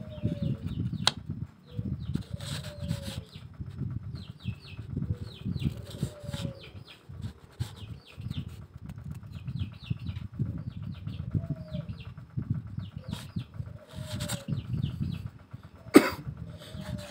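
Wooden cage rods being handled and worked into the drilled holes of a wooden frame, with steady rubbing and knocking. Behind it, birds call again and again: short falling calls and clusters of high chirps.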